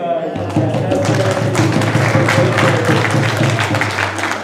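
Audience clapping in quick, sharp claps over music with a steady low drone that comes in about half a second in.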